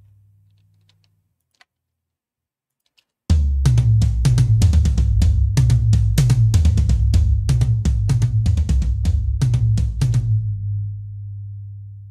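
Recorded drum toms played back from a mix: after about three seconds of silence, a fast run of tom hits lasts about seven seconds, then the last hit rings on in a long, low, slowly fading decay. The toms carry a lot of sustain, heard here before a transient shaper shortens it.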